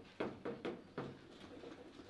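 Table-football ball knocked by the rod figures in a run of light, quick knocks, about four in the first second, then fading to softer ticks.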